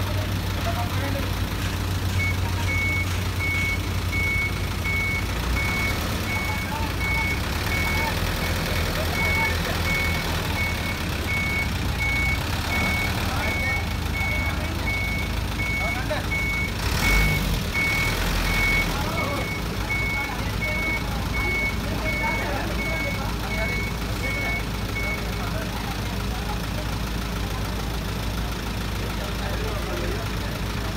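Tow truck's warning beeper sounding a long run of evenly spaced high beeps over the truck's running engine, stopping a few seconds before the end. A clunk sounds a little past the middle.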